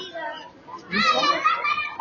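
Children talking and calling out close by, high-pitched young voices that drop briefly and then return louder about a second in.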